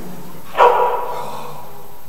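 A dog barks once, about half a second in, the bark ringing on briefly in a large hall.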